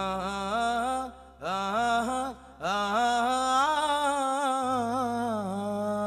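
Harmonica played solo through a stage PA with no band behind it: two short phrases, then one long held note that bends in pitch and dips before settling.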